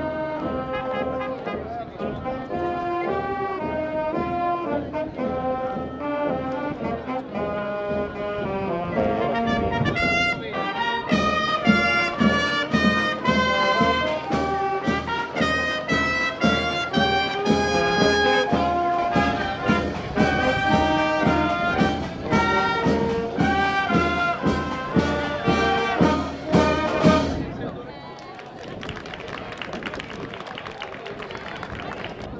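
Marching band of brass and percussion playing a march. A steady drum beat joins about a third of the way through, and the music stops suddenly near the end.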